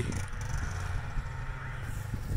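Distant snowmobile engine running, a low steady hum, with light rubbing noise as the phone is swung around.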